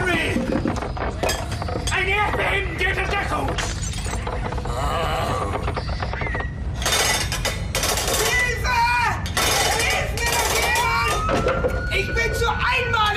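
Earthquake in a house: a steady low rumble under shouts and cries, with loud crashes of things breaking and shattering about seven and ten seconds in. Near the end a long wail rises and then holds.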